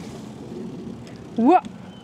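Steady riding noise of an electric cargo trike rolling along a dirt path, tyres and wind on the microphone, with one short rising-then-falling vocal exclamation from a rider about one and a half seconds in.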